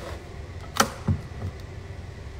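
A sharp click just under a second in, followed quickly by two soft low thumps, over a steady low background noise.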